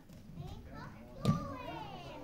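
A thud about halfway through, the loudest sound, as a child thrown in a ju-jitsu throw lands on the mat. Right after it comes a child's high voice with a long falling pitch, among other children's voices.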